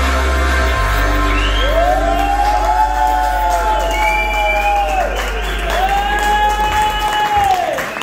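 A live band's closing low synth note held and then cut off about seven seconds in, with the audience cheering and whooping over it.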